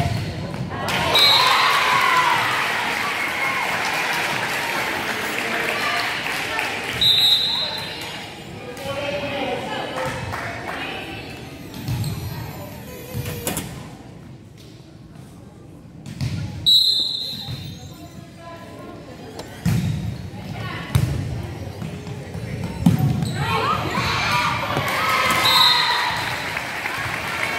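High-school volleyball rallies in an echoing gym: the ball thumping off players' arms and the floor, players and bench shouting and cheering as points are won, loudest about a second in and again near the end. A short, shrill whistle blast sounds four times.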